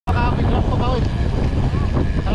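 Wind rumbling on the microphone of a camera mounted on a moving bicycle, steady throughout, with a voice speaking briefly in the first second.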